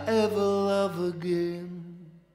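The closing sung phrase of a slow blues song: a voice holds long notes that step down in pitch over a fading backing chord, dying away as the track ends.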